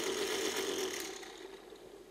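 Benchtop laboratory vortex mixer running with a sample tube held on its cup: a steady motor buzz that fades out over the last second.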